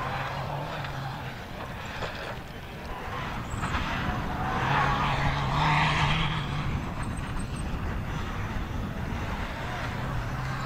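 Off-road rally buggy's engine running hard at a steady pitch as it speeds along a dirt stage, swelling to its loudest about five to six seconds in as it passes, then fading back.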